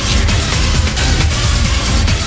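Electronic dance music from an early-1990s club DJ set: a steady kick drum under dense hi-hats and synth sounds.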